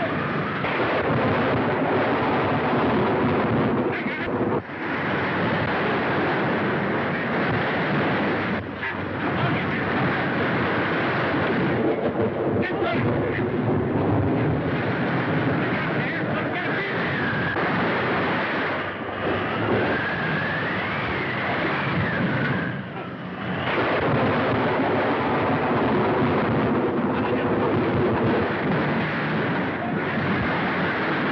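Storm sound effects on an old film soundtrack: continuous loud wind and crashing seas, with a wavering whistle of wind rising and falling for several seconds past the middle.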